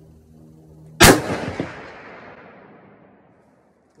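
A single rifle shot from a Forbes 24B .30-06, fired about a second in, its report echoing and dying away over about two seconds. It is the third shot of a group.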